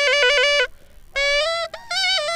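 A pepa, the Assamese buffalo-horn pipe, played: a reedy melody of short held notes that step up and down. It breaks off for about half a second just before the one-second mark and breaks briefly again near the end.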